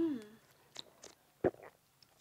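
A short falling 'mm' of tasting, then a few faint mouth clicks and lip smacks as two people sip a drink from cups. The sharpest click comes about a second and a half in.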